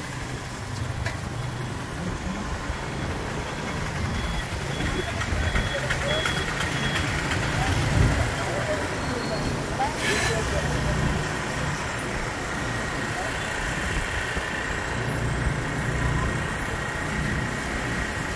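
Motorcycle engine running at low speed, heard from the saddle, with road and traffic noise around it.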